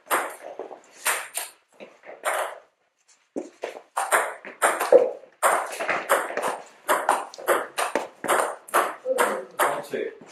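Table tennis rally: the ball clicking off the bats and the table, about two to three hits a second. There is a short pause a few seconds in before play picks up again.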